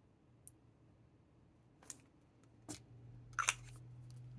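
A few light, scattered clicks and taps as a fountain pen and a small paper chromatography strip are handled, the loudest pair near the end, over a faint low hum.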